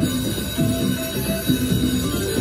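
A video slot machine's electronic win sounds: held steady tones with a short note repeated three times in the middle, as the winning symbols light up at the end of a free-spin bonus round, over casino floor hum.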